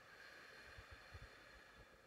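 A faint, slow human breath, a soft airy hiss that swells and fades over about two seconds, with a few soft low thuds about a second in.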